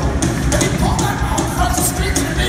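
Live rock band playing at full volume: drums, electric guitars and keyboard, with steady drum and cymbal hits, heard from the audience.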